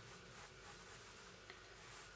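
Faint pencil strokes on paper, a soft scratching as a line is drawn, with a small tick about one and a half seconds in.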